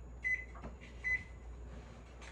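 Two short, high electronic beeps about a second apart, over a steady low hum.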